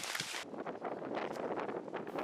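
Wind buffeting an outdoor microphone: an uneven rushing hiss with faint crackles, turning duller about half a second in.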